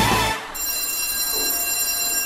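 The end of a logo jingle: a brief tail of sung music, then a steady, high electronic ringing tone held for about a second and a half.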